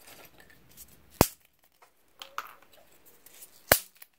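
Coloured sorghum-pith craft sticks (susukkang) snapped by hand into small pieces: two sharp snaps, about a second in and near the end, with faint handling rustle between.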